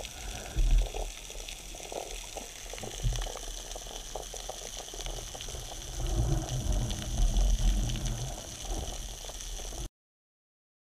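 Underwater sound through a camera housing: a steady hiss with fine crackling, and low thumps and rumbles about half a second in and again for a couple of seconds around six to eight seconds in, as the speared mackerel is handled on the shaft. The sound cuts off abruptly just before the end.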